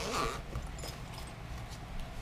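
A short zipper rasp near the start as a soft fabric case is opened, followed by faint handling sounds of the case.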